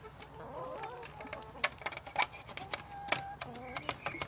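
Domestic hens clucking in short, low calls, with scattered sharp taps and clicks throughout.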